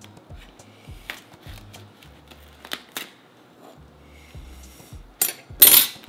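A table knife scraping and clicking against a metal baking sheet as baked empanadas are pried loose: a few light clicks, then a louder scraping rasp near the end. Soft background music plays underneath.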